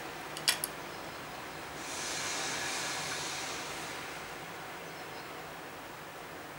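Two quick, small plastic clicks as Pyssla fuse beads are set onto a plastic pegboard, then a soft hiss that swells and fades over a second or two.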